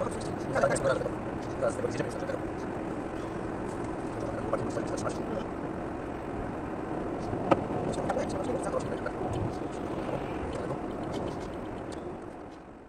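Car cabin noise at highway speed on a wet, slushy road: a steady drone of tyres and engine. Faint voices come and go over it, and a single sharp click sounds about seven and a half seconds in.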